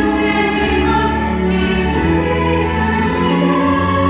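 A song from a stage musical: a group of young voices singing together over instrumental accompaniment with a steady bass, holding long notes.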